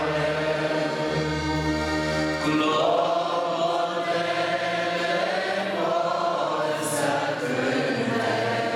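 A large group of voices singing a slow Romanian Orthodox hymn together in long, held notes.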